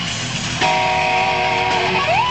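Electric guitar playing live with a band. A new chord is struck about half a second in and held.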